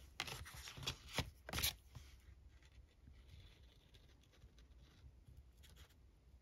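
Paper card being handled and pressed onto a paper journal page: a few short rustles and rubs in the first two seconds, then only faint handling sounds.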